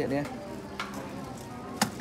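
Handling noise from a silicone facial cleansing brush on an acrylic display shelf, over low background noise: a faint click a little under a second in, then one sharp click near the end.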